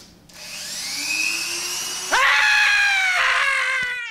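A handheld rotary tool with a cutting disc spins up with a rising whine, then runs steadily. About two seconds in it gets louder as it cuts the plastic front mudguard to shorten it.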